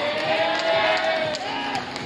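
Live idol pop song played over a PA: a female voice holds one long note that fades about a second and a half in, over the backing track.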